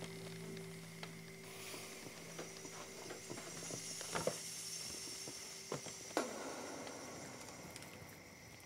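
A few scattered light knocks over a low steady hum, with a faint hiss that comes in about a second and a half in. The strongest knock, about six seconds in, has a short falling tail.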